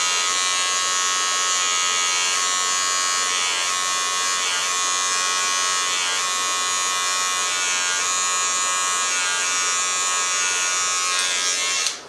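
Wahl G-Whiz battery-operated hair trimmer buzzing steadily as it cuts a lineup along the hairline, stopping near the end.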